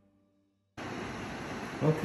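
The last of a piece of background music fades out, followed by a short stretch of silence. Steady room hiss then cuts in suddenly, and a man starts to speak near the end.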